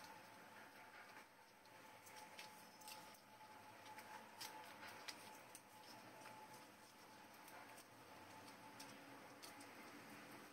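Near silence: faint room hiss with a few soft clicks and rustles of hands pressing adhesive tape onto the corners of a glass sheet laid over paper.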